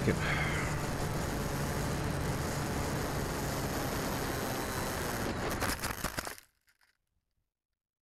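Steady rush of wind and motor noise picked up by an RC plane's onboard camera as it comes in low over grass to land. About five seconds in there is a short run of rough crackling scrapes as it touches down on the grass, and then the sound cuts off suddenly.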